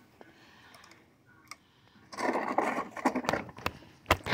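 Near quiet at first, then rustling and several sharp clicks from about two seconds in: handling noise from a phone being gripped and moved.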